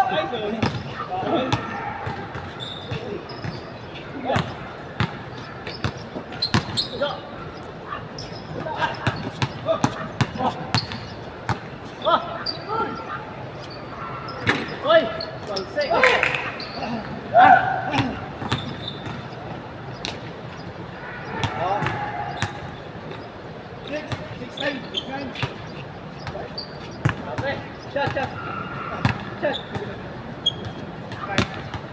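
A basketball bouncing on a hard outdoor court, irregular thuds through a pickup game, mixed with players' shouts.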